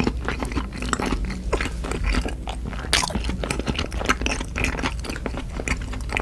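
Close-miked chewing of a soft, sticky green mugwort rice cake (ssuk-tteok): a dense run of small wet mouth clicks and smacks.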